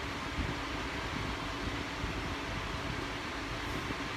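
A steady low mechanical hum with an even hiss over it, unchanging throughout.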